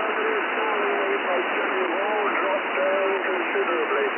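Shortwave receiver audio from the 40-metre amateur band: steady band noise and static, narrowed to a telephone-like range, with a weak single-sideband voice wavering through it, too faint to make out.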